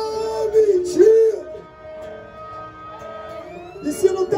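A man singing through a microphone and the sound system, holding long notes that bend up and down; it is loudest in the first second and a half and then softer.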